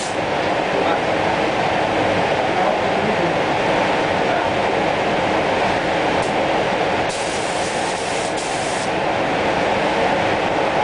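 Steady rushing air noise of a spray booth, with short hissing bursts of a spray gun about six seconds in and again from about seven to nine seconds.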